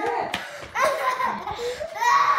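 Several people laughing, in short bursts.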